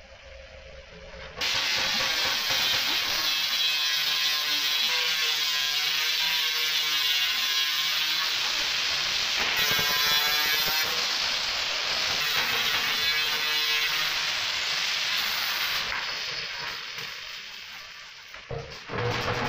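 Angle grinder with a cut-off disc cutting through a geyser's thin sheet-steel outer shell, starting about a second and a half in. Its high whine wavers in pitch as the disc bites and eases, then dies away over the last couple of seconds.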